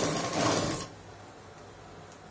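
Black domestic sewing machine running in one short burst of rapid stitching, about a second long, stopping abruptly.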